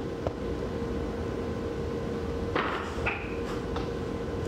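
Steady low hum of room tone, with a faint tap soon after the start, a short rustle of handling about two and a half seconds in, a brief high tone just after it, and another faint tap near the end.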